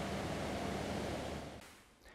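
A steady rushing noise with a faint low hum beneath it, fading out in the last half second.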